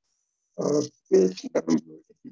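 A person's voice speaking a few quick words, starting about half a second in.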